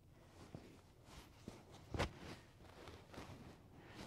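Faint bare footsteps and shuffling on a padded training mat, with one louder thump about two seconds in.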